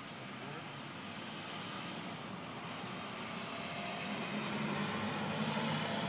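A steady low engine drone over outdoor background noise, slowly growing louder.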